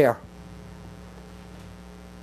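Steady low electrical mains hum on the recording, with the tail end of a man's spoken word at the very start.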